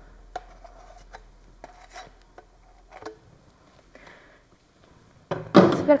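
A few faint, light clicks and taps from a plastic mixing cup and tools being handled while liquid silicone is poured into a silicone flat mould.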